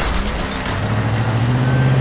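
Car engine revving up, its pitch rising, over the loud noisy clatter of a car crash as a car rolls over.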